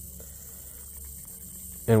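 A steady low hum with a faint high hiss over it.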